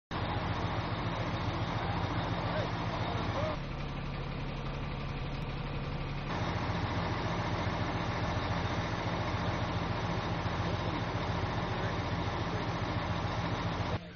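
Heavy truck engine idling steadily, a low, even hum that drops a little in level for a few seconds in the middle, with faint voices in the background.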